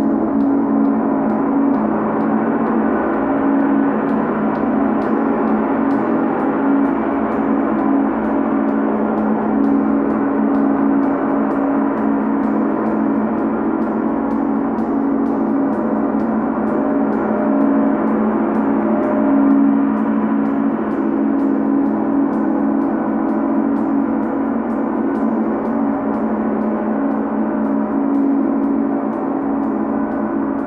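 Large Chau gong played continuously with a felt mallet: a dense, steady wash of overlapping tones, heaviest in a low hum, kept going by soft, evenly repeated strokes.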